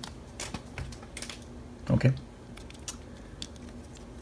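Pokémon trading cards being handled and slid against each other in the hands: a run of faint, irregular small clicks and ticks.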